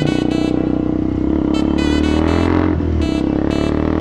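KTM Duke 200 single-cylinder engine pulling steadily under way, its note climbing slowly and then dropping briefly about three-quarters of the way through. Background music plays over it.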